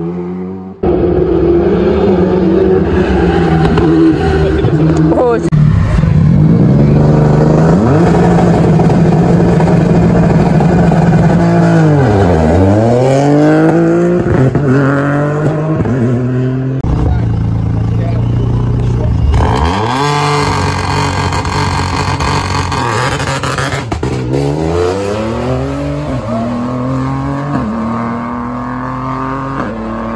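Rally car engines revving hard and accelerating along a stage, across several short clips, with the pitch climbing and falling through gear changes. About twelve seconds in, one engine note drops low and climbs straight back up, as a car slows for a bend and accelerates out.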